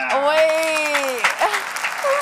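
Group laughter: one long drawn-out voice that falls away about a second in, over the noise of several people laughing.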